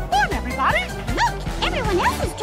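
A dog barking in a run of quick, high yips, several a second, over upbeat parade music.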